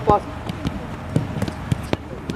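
A football being kicked in a short passing drill on a dirt pitch: several sharp thuds of foot on ball in quick succession, after a shouted "pass" at the start.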